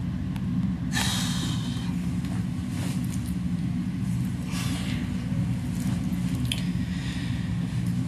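A person's short, breathy exhales and nearby rustling, heard over a steady low hum. The longest comes about a second in, and a few shorter ones follow at irregular intervals.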